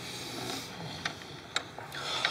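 A few light clicks and knocks as a hand handles a wooden garden gate, over a low steady outdoor hum.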